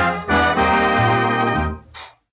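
Big-band dance orchestra with brass playing the final chords of a 1940 swing fox trot, transferred from a 78 rpm record. The sustained chords drop off shortly before the end, followed by one short closing note.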